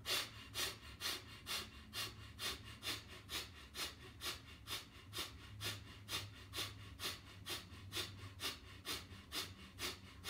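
A man's rapid, forceful exhalations through the nose in a yogic breathing exercise, an even rhythm of short puffs at about two a second.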